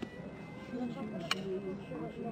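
Indistinct background voices, with one sharp wooden clack just past a second in as two children's wooden practice swords strike together.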